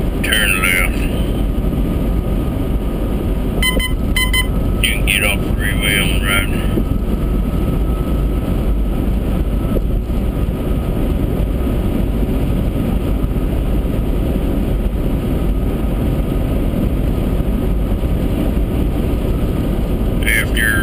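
Steady road and engine noise heard inside a car cruising at highway speed. It is loud and low, with brief higher wavering sounds near the start and again about four to six seconds in.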